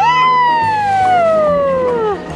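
A child's long, loud "wheee" while sledding down a snowy slope: it jumps up in pitch at the start, then slides slowly down for about two seconds before breaking off. Background music plays underneath.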